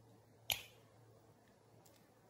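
A single sharp, short click about half a second in, with a much fainter tick near the end; otherwise very quiet.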